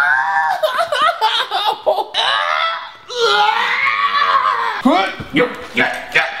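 A man crying out in pain and laughing as he rolls over Lego bricks, with long drawn-out wails: one at the start and a longer one from about halfway through.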